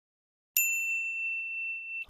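A single high, bell-like ding that strikes about half a second in and rings on, slowly fading: an intro chime sound effect for the channel's logo.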